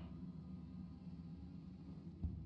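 Faint, steady low ambient drone of a slot game's soundtrack while its reels spin.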